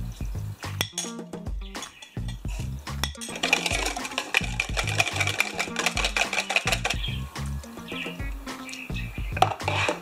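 A few spoon clinks, then a wire whisk beating eggs with salt and pepper in a plastic bowl: a fast, even run of ticks for several seconds. Background music with a steady beat plays under it.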